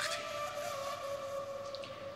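Soft background score of a few sustained, held tones.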